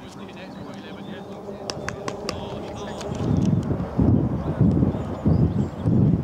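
Indistinct voices on an open-air football pitch. From about halfway there are loud, irregular low rumbling bursts on the camera microphone, like wind buffeting or handling.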